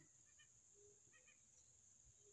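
Near silence: a faint, steady, high insect drone, with a couple of faint short chirps about half a second and a second in.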